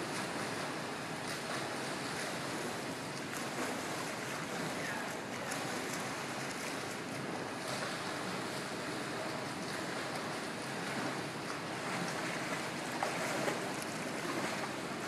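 Steady wash of splashing, churning water from swimmers doing laps in an indoor pool.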